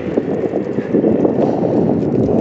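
Wind buffeting a phone's microphone: a loud, uneven rumble that rises and falls in gusts.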